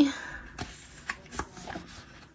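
Pages of a disc-bound paper planner being turned: paper rustling with several light clicks.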